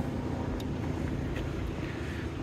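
Steady low ambient rumble and hiss, with no distinct events.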